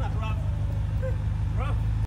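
BMW M6 convertible's twin-turbo V8 idling with a steady low rumble.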